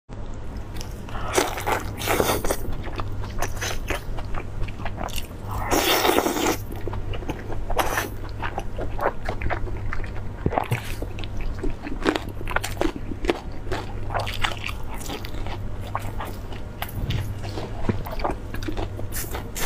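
Close-miked eating: bites and chewing of sauce-glazed rolled meat, with irregular crunchy and wet mouth sounds, louder bites about two seconds and six seconds in, over a steady low hum.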